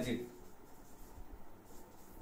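Faint scratching of writing on a board.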